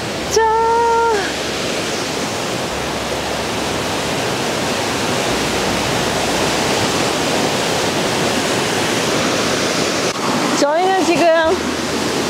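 Steady rush of a tall waterfall plunging onto rocks. A voice calls out once, held for under a second, right at the start, and a few spoken words come near the end.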